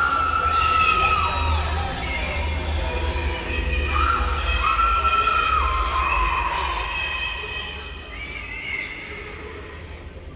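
Pigs squealing: several long, high, wavering squeals over a low droning music bed, fading near the end.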